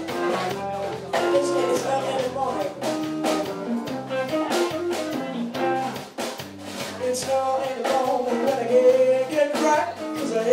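Live blues band playing: an electric guitar and a drum kit keep a steady groove while a woman sings into a microphone.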